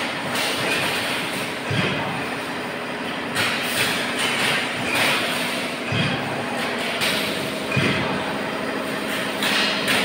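Chain link mesh weaving machine running with a continuous metallic clatter over a steady hum, with a few heavier knocks.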